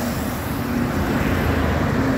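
Highway traffic passing close by: a steady rush of engines and tyres as trucks and two-wheelers go past.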